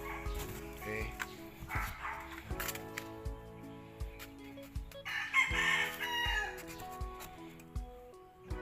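A rooster crows once, about five seconds in, over background music. Shorter chicken calls come in the first two seconds.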